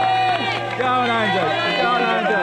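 Spectators shouting and cheering encouragement at a runner, over a pop music track with a steady held bass note.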